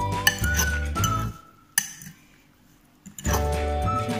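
Background music, dropping out for about two seconds in the middle, over a metal fork clinking against a glass bowl as salad is stirred, with a sharp clink in the gap.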